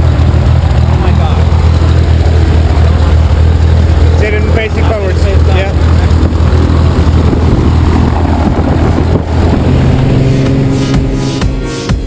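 Light jump plane's piston engine and propeller running steadily close by, a loud low drone, with voices calling out briefly around four seconds in. Near the end the drone cuts off and electronic music with a beat comes in.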